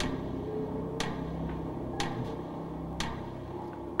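Game show countdown timer cue: a clock-like tick once a second over a sustained low music bed while the 30-second answer clock runs.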